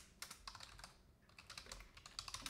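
Faint typing on a computer keyboard: a handful of scattered key clicks.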